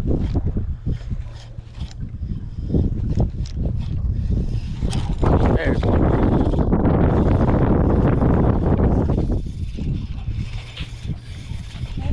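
Wind buffeting the microphone on open water, with a few light clicks near the start and a stronger gust from about five seconds in until about nine and a half.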